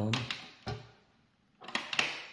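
Rotary switch knob of a Coleman CPX6 LED lantern clicking as it is turned by hand: one click under a second in, then a quick run of clicks near the end.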